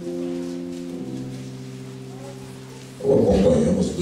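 Electric keyboard holding soft sustained chords, moving to a new chord about a second in; near the end a loud, rough burst of a voice cuts in over it.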